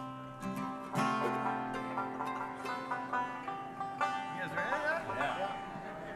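Acoustic bluegrass string instruments (guitars and mandolin) plucked and strummed while the band tunes up: single notes and chords ringing on, with strums about a second in and again about four seconds in.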